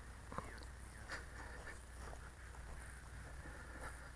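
Faint crunching footsteps in dry grass, a few soft ticks over a low steady background hum.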